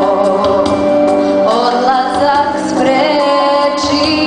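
A girl singing live into a handheld microphone, her sustained, slightly wavering notes carried over held chords of backing music.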